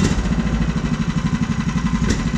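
Small combustion engine of a large-scale MAZ-537 RC truck model idling with a rapid, even putter.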